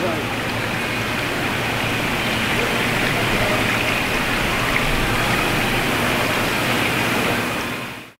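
Seawater pouring and bubbling into aerated shellfish display tanks: a steady rushing of running water that fades out near the end.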